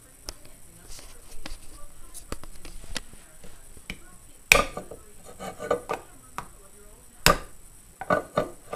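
A knife point knocking and jabbing at the metal screw lid of a glass jar of peaches: a scattered run of small clicks and knocks, with two loud strikes about four and a half and seven seconds in.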